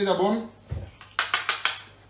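A low thump, then a quick run of sharp clinks about a second in: a spoon knocking against a small bowl.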